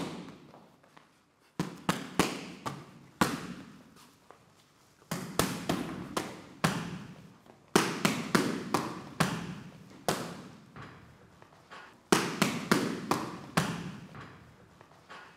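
Punches landing on a heavy punching bag in quick combinations of three to five blows with short pauses between, each run echoing in a large room.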